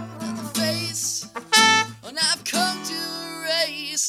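Acoustic guitar with trumpet and a male singing voice, in long held notes that waver near the end.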